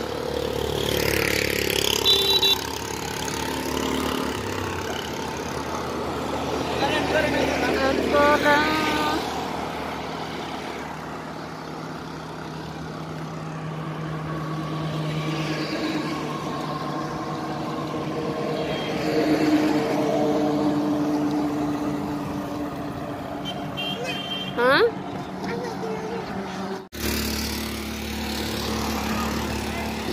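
Motor traffic driving past on a busy road, engines and tyres, with people's voices mixed in and a few short pitched sounds. The sound drops out suddenly for a moment near the end.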